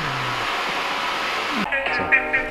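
A steady rushing noise with no clear pitch. About a second and a half in it stops suddenly and a voice begins.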